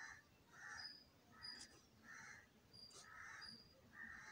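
Faint bird calls repeating steadily, about six in four seconds, under otherwise near silence.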